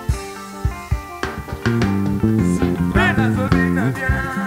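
Live band music: drum hits with keyboard, and a bass line coming in about halfway through.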